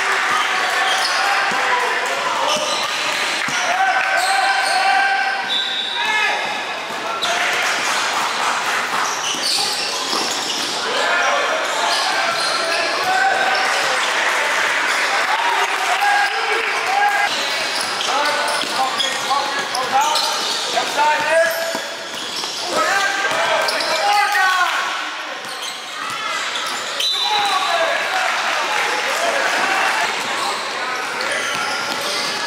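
Basketball dribbling on a gym floor during a game, with players and spectators talking and calling out, echoing in a large hall.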